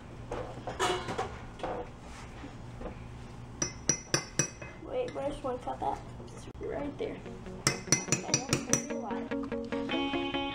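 Metal spoon clinking against the rim of a glass measuring cup as sour cream is scooped in and knocked off: a quick run of ringing clinks about four seconds in and another near eight seconds. Background music comes in near the end.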